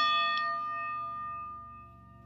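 A bell struck once, ringing out with several clear overtones and fading away over about two seconds, with a light second tap about half a second in. Soft ambient music runs low underneath.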